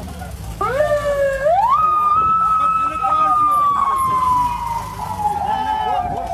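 Police car siren sounding one slow wail: it rises in pitch in two steps over the first two seconds, then falls slowly and steadily, with voices underneath.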